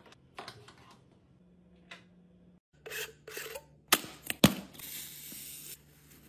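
Objects being handled: light rustling and small clicks, then after about three seconds a run of sharp clicks and two loud knocks, followed by a steady hiss lasting about a second.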